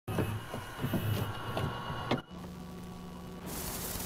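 VCR tape mechanism: a run of mechanical clicks and clunks, then a steady motor hum. About three and a half seconds in, an even hiss of tape static starts.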